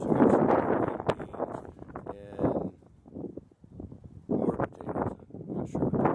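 Wind buffeting the microphone in gusts, heaviest in the first two seconds and again near the end.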